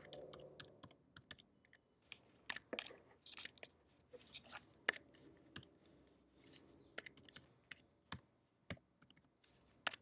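Computer keyboard being typed on: faint, sharp keystrokes in quick irregular runs with short pauses, as a password and a string of numbers are entered.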